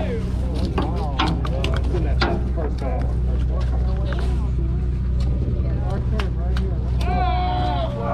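Steady low drone of a sport-fishing party boat's engine, with indistinct voices of anglers and scattered sharp clicks and knocks.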